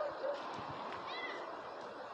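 One short, high-pitched animal call about a second in, rising and falling once, over faint steady outdoor background noise.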